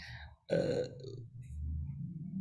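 A man's drawn-out, low, throaty hesitation sound, 'uh', starting about half a second in and heard over a video call.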